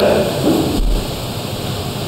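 Steady hiss of background noise in a pause in a man's speech, with a low thump just under a second in.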